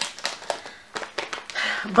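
Crinkling of a plastic shortbread-cookie bag as it is handled and lifted, a run of irregular small crackles and rustles.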